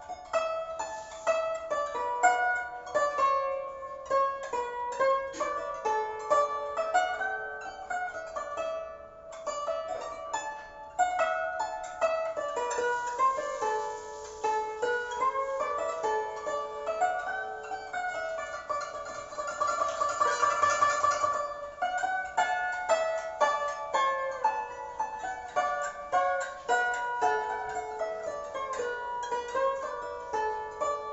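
A guzheng (Chinese plucked zither) played solo: runs of plucked notes climbing and falling, with a stretch of fast tremolo on repeated notes about two-thirds of the way through.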